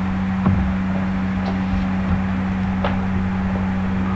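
Steady electrical hum with a low hiss under it, broken by a few faint clicks.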